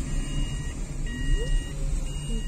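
A car's electronic warning chime beeping at an even pace: two-tone beeps about once a second, each lasting a little over half a second, over a steady low rumble inside the car's cabin.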